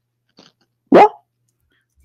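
A single short, sharp call about a second in, rising quickly in pitch, like a bark or yelp.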